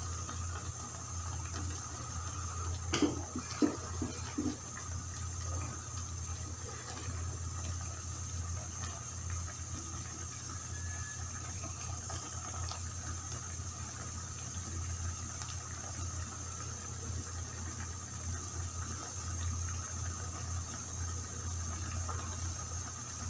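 A steady low hum with a faint hiss underneath, and a few soft knocks about three to four and a half seconds in as whole tomatoes are set into a frying pan of raw chicken.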